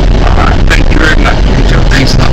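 Loud, steady rumble of a vehicle moving along a road, with wind on the microphone.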